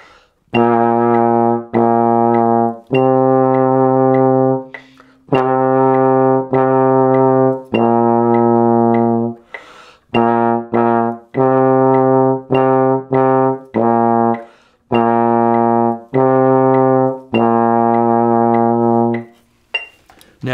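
Trombone playing a slow beginner exercise of low tongued notes, B-flat in first position alternating with C in sixth position: about fifteen sustained notes in short phrases, each started with the tongue, with a breath taken about ten seconds in.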